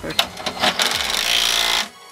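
Cordless drill-driver spinning a bolt in, running for a little under two seconds and cutting off suddenly.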